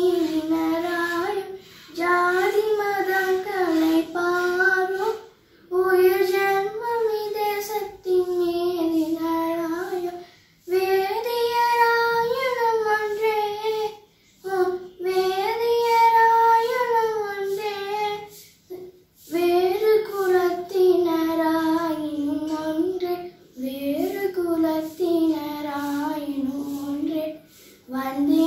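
A girl singing solo and unaccompanied, in held phrases of a few seconds each with short pauses for breath between them.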